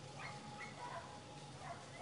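Faint dog barks and yips: about four short, separate calls, each dropping in pitch, at uneven gaps.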